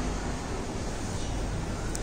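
Steady background hiss of room ambience, with no distinct event.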